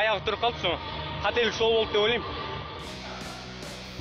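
A man talking, over background music; after a break near the end, a few short sharp hits sound over the music.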